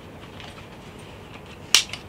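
The crotch-strap buckle of an inflatable lifejacket clipping shut: one sharp click near the end, with a few faint ticks around it.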